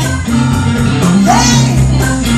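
Live blues band playing: a woman singing into a microphone over electric bass, drums, electric guitar and keyboards.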